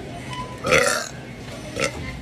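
A woman burps out loud once, a bit under a second in, followed by a shorter second sound near the end.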